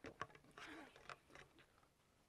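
Faint sharp clicks and a short rustle, then a brief laugh about a second in.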